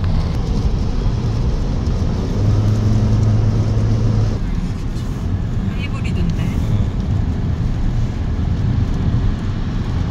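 Cabin noise in a moving fifth-generation Toyota Prius hybrid on a wet road: road and tyre noise with the petrol engine's drone coming through into the cabin. The engine hum is strongest a couple of seconds in and eases off after about four seconds.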